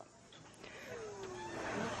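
A faint distant voice holding one long call that falls slowly in pitch, starting about half a second in, over a low outdoor background hiss.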